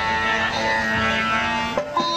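A benju, the Pakistani keyed banjo, playing a melody over a held low note, with a change of notes near the end.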